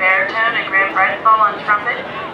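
A person's voice, loud and clear, in short phrases with brief breaks; no words can be made out.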